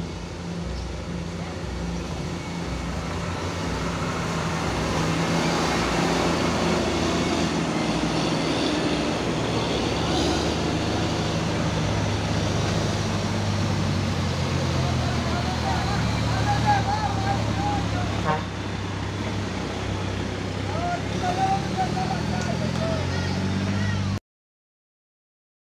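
Diesel engines of heavy road-building vehicles passing close: a motor grader, then a MAN tractor unit pulling a lowboy trailer. The engine noise grows louder a few seconds in and stays loud and steady.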